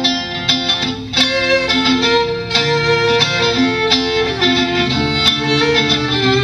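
Fiddle and acoustic guitar playing live in an instrumental break between verses. The fiddle carries a moving melody over regularly strummed guitar chords.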